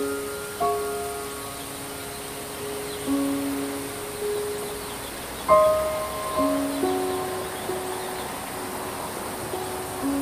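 Slow, sparse piano notes and chords, each struck and left to ring and fade, over a steady hiss of rain. The loudest chord comes about five and a half seconds in.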